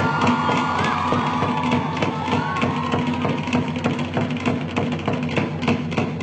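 Tahitian percussion ensemble, with to'ere slit log drums and pahu drum, playing a fast, steady drumbeat for ori Tahiti dancing.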